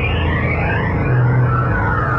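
Dark ambient synthesizer music: a low drone that swells about once a second, with tones sweeping up and down above it.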